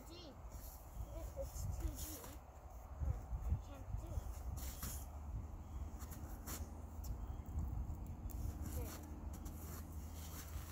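Faint, indistinct voices of young children murmuring and vocalising in snatches, over a low steady rumble, with a few short soft crunches or knocks.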